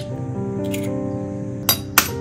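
Background music, with two sharp clinks near the end as an egg's shell is tapped to crack it.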